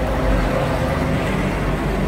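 Steady low rumble of street traffic, with a faint engine hum.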